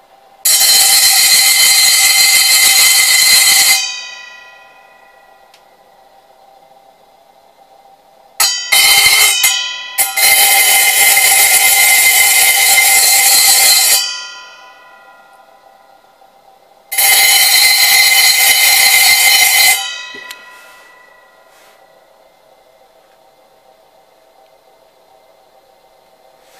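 A twist drill bit being ground on a spinning 200 mm diamond disk, in three passes of a loud, harsh, ringing screech; after each pass the ringing fades away over about a second. Between passes only a faint steady hum remains.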